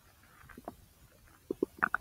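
Human large intestine gurgling: a few faint, scattered gurgles, then a quick run of louder short gurgles in the last half second.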